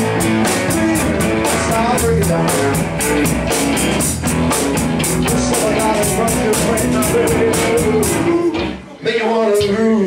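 Live blues band playing: electric guitars, bass guitar and drum kit with steady cymbal strokes. Near the end the band cuts out for a moment and then comes back in.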